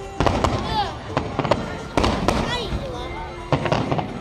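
Aerial fireworks shells bursting overhead: about eight sharp bangs, some in quick pairs, spread through the few seconds.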